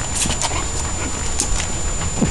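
Puppy whimpering briefly, with a few short high clicks.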